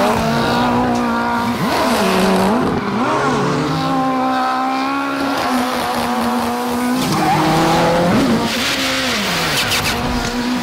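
Ford Fiesta rally car doing donuts on concrete: its turbocharged four-cylinder engine revs rise and fall repeatedly, holding steady for a few seconds in the middle, with tyres squealing.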